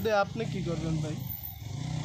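Motorcycle engine idling steadily under a man's voice, which speaks at the start and trails off by about a second in.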